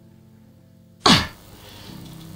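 A person sneezes once, a short sharp burst about a second in, over faint background music.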